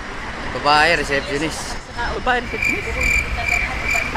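Background voices over a constant low rumble, joined about two and a half seconds in by a steady high-pitched electronic tone that pulses slightly and runs on for over a second.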